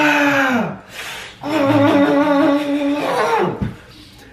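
A man's voice letting out two long, loud, held cries of excitement. The first falls off after about a second; the second is held steady for nearly two seconds.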